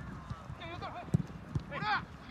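Soccer players calling out to each other in short shouts during play. About a second in comes a single sharp thud of a soccer ball being kicked.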